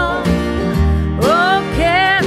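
Acoustic country band playing an instrumental passage: strummed acoustic guitar and upright bass notes under a lead line whose notes bend upward in pitch, twice.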